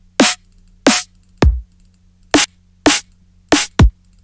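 Self-made synthesized drum one-shots previewed one after another: about seven short, separate hits, most of them snares with a falling pitch. Two deeper kick hits sweep right down, once about a second and a half in and again near the end.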